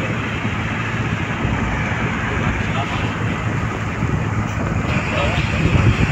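Steady road noise of a car travelling at motorway speed, heard from inside the car: a low tyre rumble with wind rushing past.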